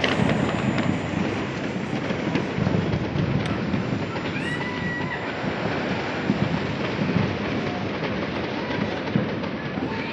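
Many distant fireworks going off at once across a city at midnight, a continuous rumble of overlapping pops and bangs. A brief whistle sounds about four and a half seconds in.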